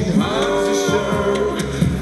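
Male a cappella vocal group singing in close harmony, several voices holding chords over a steady percussive beat.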